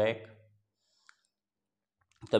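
A man's voice trailing off in the first half second, then near silence broken by a single short click about a second in.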